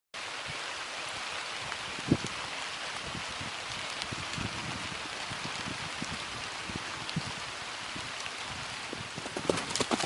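A horse's dull hoofbeats on grass, irregular, under a steady hiss. There is one sharper thump about two seconds in and a quick flurry of knocks near the end.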